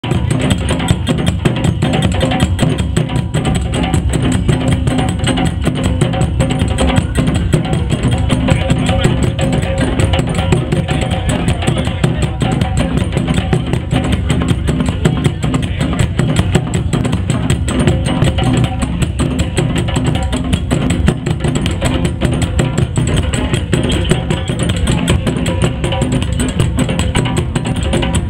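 Several drums played together by a street group in a fast, steady rhythm.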